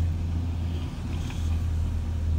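Steady low hum of an idling van engine, heard from inside the cab.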